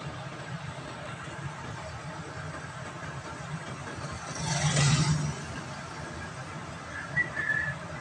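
Small vehicle's engine running with a steady low hum heard from inside the cab, swelling into a louder whoosh about halfway through. A brief high two-note chirp comes near the end.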